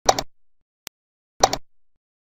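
Computer mouse click sound effects: two clicks, one right at the start and one about a second and a half in, each a quick double tick of the button going down and up.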